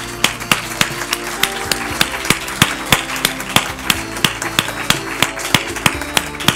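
Applause, with sharp claps coming about three a second, over music with held notes.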